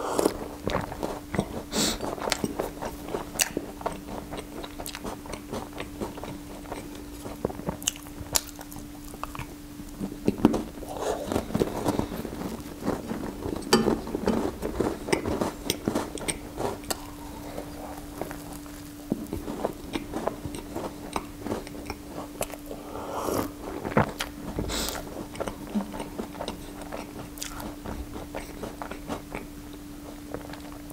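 Close-miked biting and chewing of a cream-filled choux pastry ring, with many small wet mouth clicks, busiest partway through. A steady hum runs underneath.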